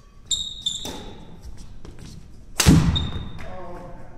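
Badminton doubles play on a wooden sports-hall floor: high squeaks of court shoes and a racket strike early on, then a heavy thud about two-thirds of the way through, the loudest sound. A short voice comes near the end, with the hall's echo throughout.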